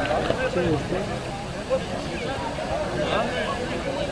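Indistinct, overlapping voices of rugby players and spectators calling and talking across the field, none of them close.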